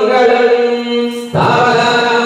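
Hindu ritual mantra chanting in long, held notes; the chant breaks off briefly just over a second in and the next phrase starts.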